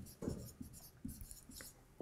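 Dry-erase marker squeaking and rubbing on a whiteboard in a series of short, faint strokes as a word is written out.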